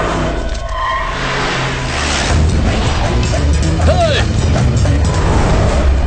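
Dramatic film background score with a heavy low rumble that swells about two seconds in, and men's shouts rising over it about four seconds in as an armed crowd charges.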